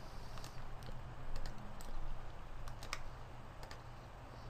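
Light, scattered clicks of a computer mouse, about ten over a few seconds, over a faint steady low hum.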